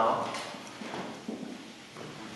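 A man's voice trailing off, then a pause of room noise with a few light knocks.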